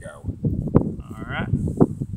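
Close rustling and scraping from hands and a blade working in an opened deer carcass, with a sharp click a little before a second in. Just after one second comes a short, drawn-out voice sound.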